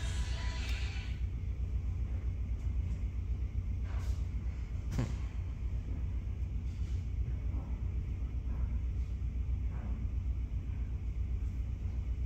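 Film soundtracks playing from a computer: a steady deep rumble under faint music, with a few soft hits, the clearest about five seconds in.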